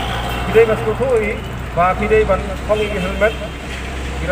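A man speaking in Khasi through a handheld microphone, over a steady low hum.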